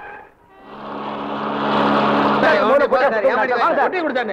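A motor vehicle's engine running with a steady drone that grows louder as it approaches, then overlapping voices over it in the second half.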